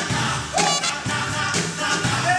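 Live band playing an upbeat song, with drum kit, trumpet, upright bass and acoustic guitar.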